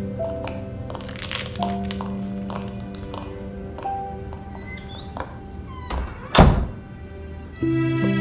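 A wooden door being shut, one loud thud about six and a half seconds in, over soft background music that swells near the end.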